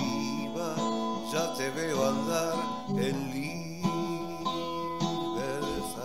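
Gibson acoustic guitar strummed in a steady chord pattern, with a man's voice singing along softly in places.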